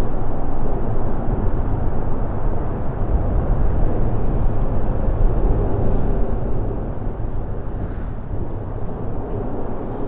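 Steady low rumble of road traffic from the bridge overhead, with no distinct events.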